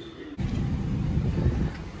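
Quiet room sound gives way suddenly, about half a second in, to a loud, uneven low rumble of outdoor noise.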